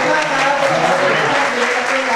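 Audience applauding, a dense run of clapping with voices calling out over it.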